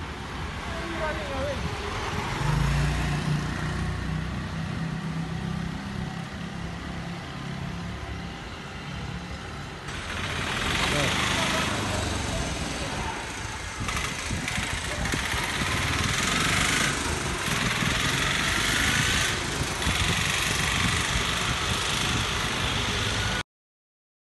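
A motor vehicle's engine running with a low steady hum, joined about ten seconds in by a louder rushing noise of wind and road; the sound cuts off suddenly just before the end.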